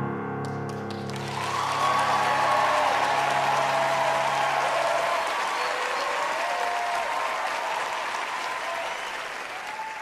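Studio audience applauding and cheering, with whoops rising over the clapping. A held keyboard chord carries on underneath and dies away about five seconds in.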